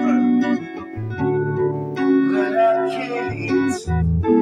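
Music: a backing track with guitar and keyboard chords over a changing bass line.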